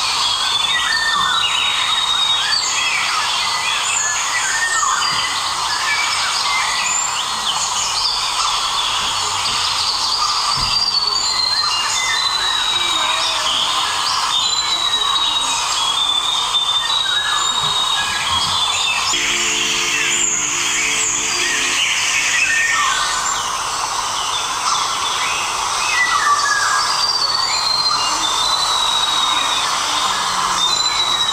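A dense chorus of birds chirping and calling, many short repeated chirps and brief falling whistles over a steady hiss, with a short low droning tone about two-thirds of the way through.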